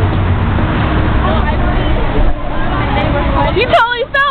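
Road traffic passing close by: a steady rumble and hiss with faint chatter under it. Near the end a loud, high-pitched voice breaks in.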